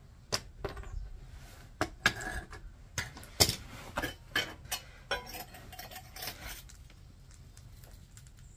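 Metal tools and small casting moulds being handled and set down on fire bricks: a run of irregular sharp clicks, clinks and knocks, busiest in the middle and thinning out near the end.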